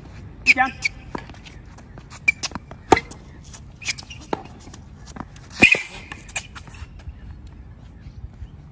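Tennis rally on a hard court: a string of sharp, irregularly spaced racket hits and ball bounces, with a couple of short vocal sounds between the shots.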